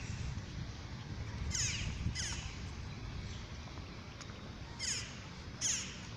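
Crow-family bird giving four short, harsh caws in two pairs, over a steady low background rumble.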